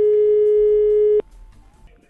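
Telephone ringback tone heard down the line: one steady beep of about a second and a half that cuts off sharply about a second in, the sign that the number is ringing at the far end.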